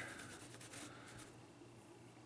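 Faint scratchy rubbing of a paintbrush's bristles being wiped back and forth on a paper towel to take most of the paint off for dry brushing. It dies away after about a second.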